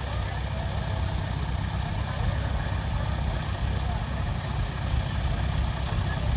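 Heavy diesel engine of the recovery equipment running steadily at low revs, a constant low rumble, with faint voices of onlookers near the start.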